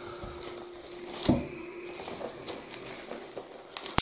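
Plastic shrink wrap being peeled and torn off a cardboard box, crinkling and crackling irregularly, with a few sharper snaps.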